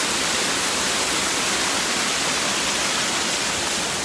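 Waterfall pouring over rock close by: a steady rush of falling water.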